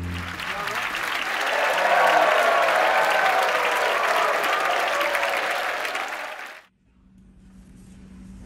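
Audience applauding after a piece of music ends; the applause cuts off suddenly near the end.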